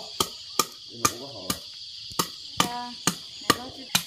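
A machete chopping pieces of wood against a wooden block in quick, sharp strokes, about two a second.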